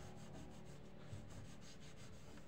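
Faint rubbing and squeaking of a hand wiping soapy window glass, in several back-and-forth strokes.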